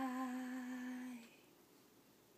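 A female voice, unaccompanied, holds the song's final note at a steady pitch, then stops about a second and a quarter in, leaving faint room hiss.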